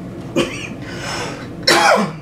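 A woman coughing: a short cough about half a second in, then a louder one near the end.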